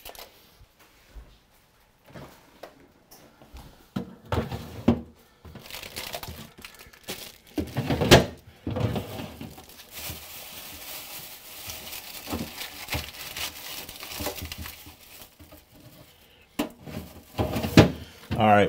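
Scattered knocks and thuds with plastic crinkling as vegetables are fetched from a refrigerator. The loudest knock comes about 8 seconds in, and a steady hiss runs for about five seconds after it.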